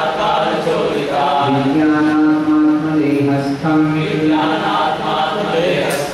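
A man's voice chanting a devotional mantra in long, level-pitched held notes, phrase after phrase with short breaks between them.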